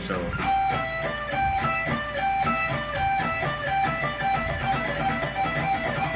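Charvel electric guitar playing a repeating pentatonic run of single picked notes, two notes per string, alternate picking with a double downstroke at each string change (a mix of alternate and economy picking).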